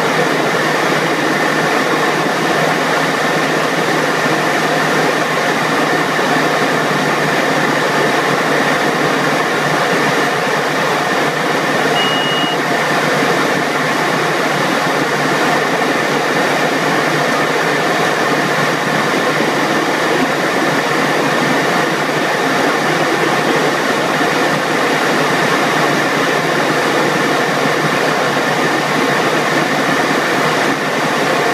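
Steady engine and propeller noise of a small plane heard inside the cockpit, even in level throughout. A short high beep sounds once, about twelve seconds in.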